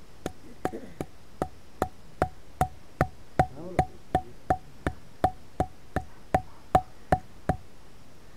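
A thick wooden stick used as a mallet beating an upright wooden stake into the ground: about twenty steady, evenly spaced blows, roughly two and a half a second. Each blow is a sharp wooden knock with a short ring.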